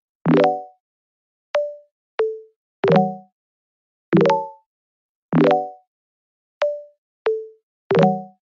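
Background music of sparse, bouncy short notes, about one a second, each starting sharply and dying away quickly, with full silence between; fuller chord-like notes alternate with thin single tones.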